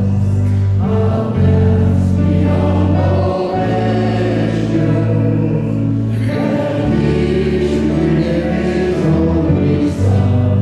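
Slow worship song sung by a small group of men's and women's voices over keyboard accompaniment, with sustained bass chords that change every second or two.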